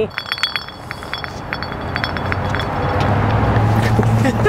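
A glass bottle spinning on asphalt, a quick irregular run of clinks and rattles for about two and a half seconds as it turns and settles. A low rumble builds in the last second or so.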